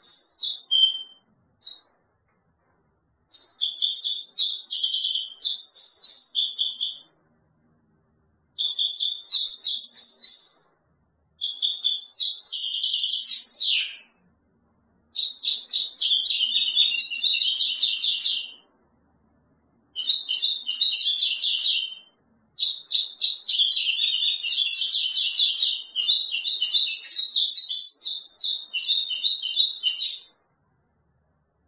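European goldfinch singing: bursts of fast, high song phrases a few seconds long, separated by short pauses, running into a longer unbroken stretch of song near the end.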